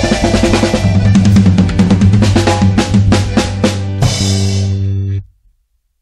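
Accordion-led band with a drum kit ending a song: a busy drum fill about two to four seconds in, then a final held chord that cuts off suddenly just after five seconds in.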